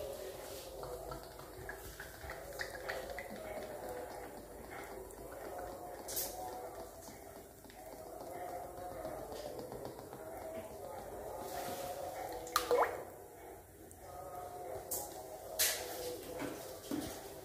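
Cooking oil poured from a plastic bottle into an empty black iron kadai: a thin stream of oil trickling and dripping into the pan. A few light knocks, the loudest a little past two-thirds of the way through.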